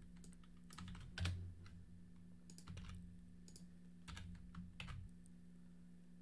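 Faint typing on a computer keyboard: irregular keystrokes scattered throughout, the loudest about a second in, over a low steady hum.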